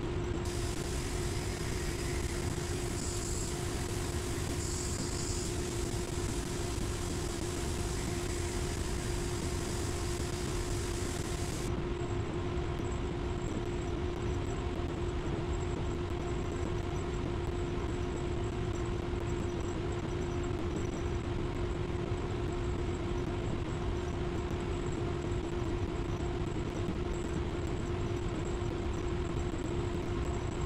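Spray booth ventilation fans running: a steady rush of air with a constant hum. A higher hiss joins in just after the start and cuts off suddenly about twelve seconds in.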